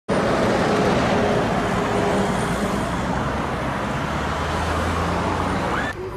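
Road traffic passing close by: steady engine and tyre noise from vehicles on the road, with a deeper engine rumble growing louder in the second half.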